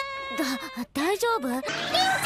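A girl's voice in anime voice acting, wavering and whiny, as if tearful or sick. Soft background music tones come in near the end.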